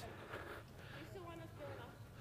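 Faint room tone with a distant voice speaking briefly, about a second in.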